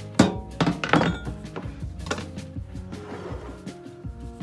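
A few sharp clunks on a kitchen counter as a knife and a glass baking dish are set down and moved, bunched in the first second with one more about two seconds in, over steady background music.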